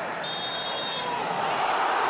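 Football referee's whistle blown once, a steady high tone lasting under a second, stopping play for a foul and a free kick. Stadium crowd noise swells after it.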